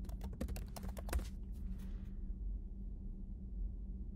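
Computer keyboard typing: a quick run of keystrokes over the first second and a half, a few more by about two seconds in, then only a faint steady hum.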